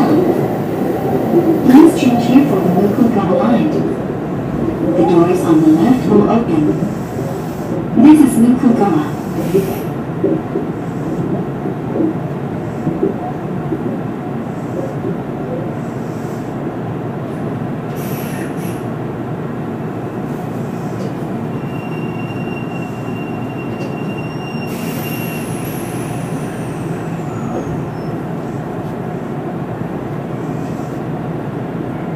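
Hanshin electric train running along the track, heard from inside the driver's cab as a steady rumble of wheels and motors. A voice is heard over it for the first ten seconds or so, and a brief thin, high wheel squeal comes in the latter part.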